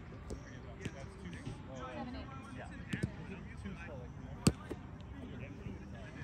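A roundnet ball smacked once, sharply and loudly, about four and a half seconds in. A few softer taps of the ball come earlier.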